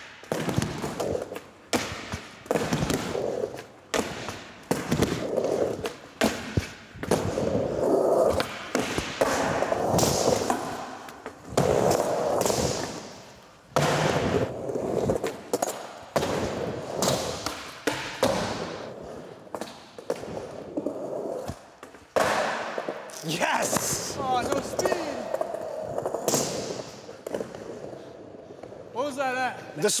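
Skateboard being ridden over wooden ramps and concrete: wheels rolling, with sharp clacks and thuds of tail pops, landings and board hits on coping, ledge and rail, one every second or two.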